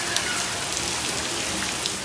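Steady rain falling on a street, heard as a continuous hiss with scattered sharper drop sounds.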